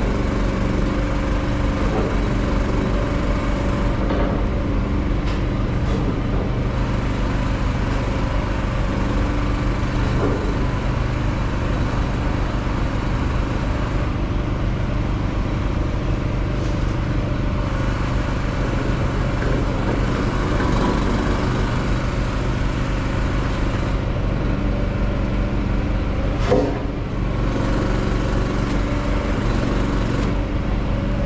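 Heavy truck's diesel engine idling steadily, an even low hum, with a short clunk near the end.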